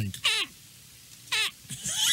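A man's high-pitched, squealing laughter in short bursts: two brief yelps early on and about a second and a half in, then a longer laugh starting near the end.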